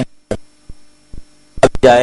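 Faint steady electrical hum, a single low tone, with a few short soft clicks during a pause in a man's speech.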